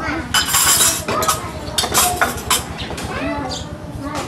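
Dishes and cutlery clinking, a run of short sharp clinks of china bowls and plates being handled, with voices talking in the background.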